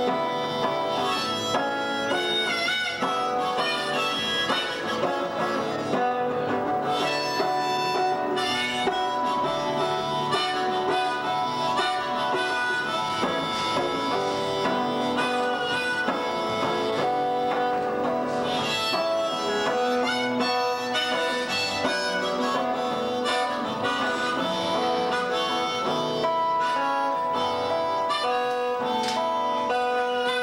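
Harmonica in a neck rack playing a melody of held notes over an acoustic guitar.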